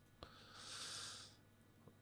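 Near silence: a faint click, then a soft exhaled breath lasting about a second from about half a second in.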